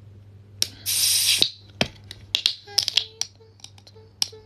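Small objects handled close to the microphone: a sharp click, then a short burst of hissing about a second in, followed by a scatter of light clicks and taps, over a steady low hum.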